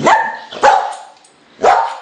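A dog barking three times, short loud barks about a half second and then a second apart.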